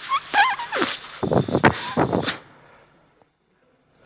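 A man blowing hard into a rubber balloon whose end has been cut off, so the air escapes and it will not inflate. There is a wobbling, squawking squeal from the rubber, then breathy puffs, lasting about two seconds.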